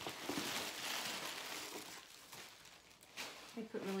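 Plastic packing wrap crinkling and rustling as hands pull it out of a cardboard box, for about two seconds, then dying down. A woman's voice starts near the end.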